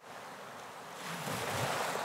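Surf-like rushing of waves and wind opening a psychedelic rock track. It starts suddenly out of silence and swells over about a second and a half, with a low rumble underneath.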